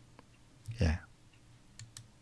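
A man says a short "ye" (yes) about a second in, with a few faint computer mouse clicks around it, the sharpest near the end.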